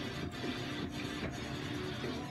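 Music playing.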